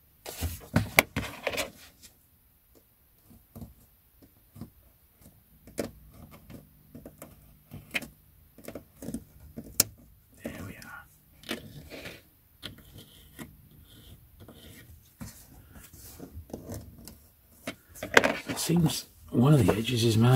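Scalpel blade scraping and slicing along the old glued spine of a vintage paperback, teasing off its partly detached cover, with paper rustling and scattered small clicks and taps as the book and tools are handled. A voice comes in at the very end.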